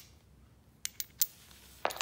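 Small steel crankshaft pieces and a ball bearing from Honda GX25 engines, clicking against each other in the hands: a click at the start, then three quick sharp clicks about a second in. A heavier knock near the end as the parts are set down on a concrete floor.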